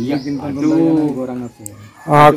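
A man's voice speaking in a drawn-out phrase, with small birds chirping faintly at the start.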